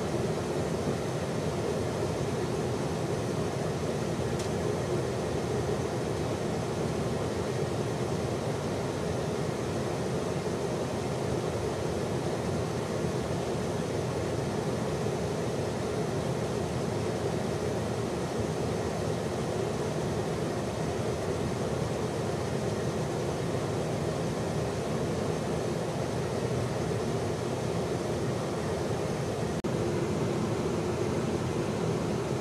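Steady, unchanging rush of airflow and engine noise aboard a tanker aircraft in flight during air-to-air refuelling.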